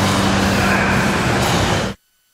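A motor running steadily with a constant low hum under a noisy hiss; the sound cuts off abruptly near the end.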